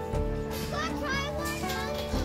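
Background music with steady held notes, joined from about half a second in by high-pitched children's voices calling out.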